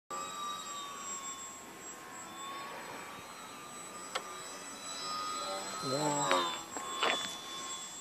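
Electric motor and propeller of a Hacker Venus 3D RC aerobatic plane whining in flight, a steady high tone that sinks slightly in pitch in the first second or so. Two short clicks come about four and seven seconds in.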